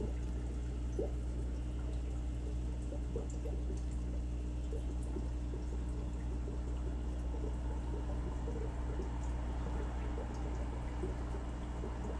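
Aquarium water trickling and bubbling, with many small pops and drips over a steady low hum from the tank's running filter equipment.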